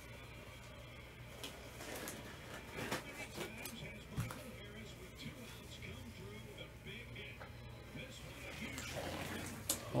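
Faint background voices and music over a low steady hum, with a few light clicks and taps.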